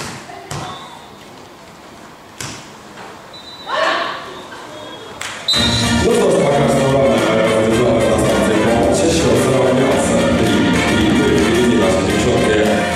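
A few dull thuds of a beach volleyball being struck during a rally. About five and a half seconds in, loud music cuts in suddenly and plays on.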